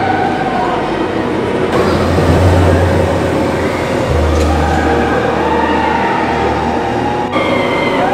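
TRON Lightcycle / Run roller coaster train rushing along its steel track overhead, a loud steady rumble that is deepest and strongest for several seconds in the middle.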